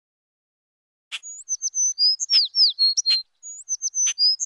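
A songbird singing a short phrase of high whistled notes with downward slurs and sharp clicks, starting about a second in and repeated once about two seconds later.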